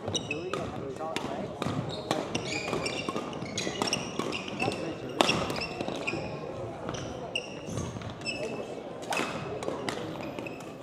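Badminton rally on a gym court: sharp racket hits on the shuttlecock and footfalls, with many short high squeaks from shoes on the court floor. The loudest hit comes about five seconds in.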